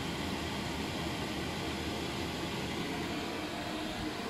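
A 5 kW Chinese diesel air heater running, its blower fan giving a steady, even rush of air. Just cleaned of soot, it is running as it should.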